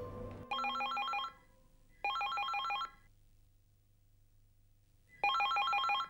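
Electronic ringer of a beige corded desk telephone signalling an incoming call: three short, fast warbling trills, the first two close together and the third about five seconds in.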